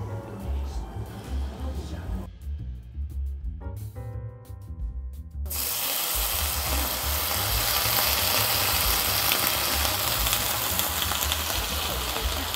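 Sauce poured into a hot iron sukiyaki pot of vegetables sizzles loudly and steadily from about halfway through. Background music plays throughout.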